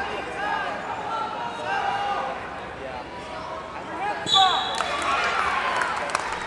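Several voices shouting and calling in a large echoing hall, and about four seconds in, a short, sharp blast of a referee's whistle that stops the wrestling.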